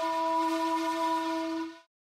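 A single long, steady blown note on a wind instrument, breathy and rich in overtones, stopping abruptly near the end.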